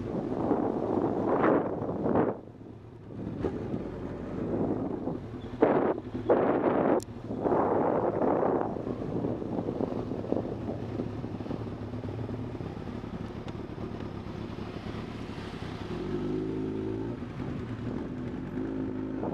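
Motorcycle engine running as the bike pulls away and rides off at low speed. Loud rushing bursts of wind on the microphone fill the first half, then the engine's steady note is heard, growing clearer near the end.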